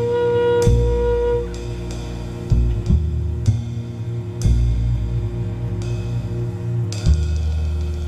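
Small jazz ensemble playing: a long held saxophone note ends about a second and a half in, over upright bass and a drum kit whose cymbal crashes and drum hits land every second or so.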